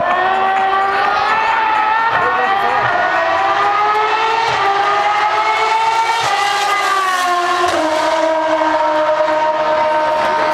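Single-seater race car engine at high revs, its note climbing slowly as it approaches. It drops in pitch as the car passes about seven seconds in, then holds a steady lower note as the car pulls away.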